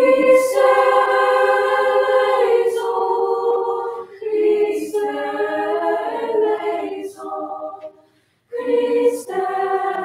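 Middle school varsity choir singing sustained chords in phrases, with a brief silence a little after eight seconds in before the next phrase.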